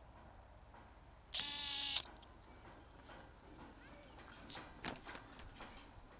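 A loud, steady buzzing tone lasting about two-thirds of a second, starting about a second and a half in, followed by faint scattered clicks and knocks.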